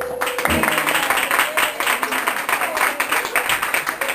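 A held keyboard note ends about half a second in, then an audience claps, with children's voices over the applause.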